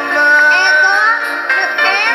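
Music with a singing voice that holds one note through about the first second, then moves on in shorter phrases.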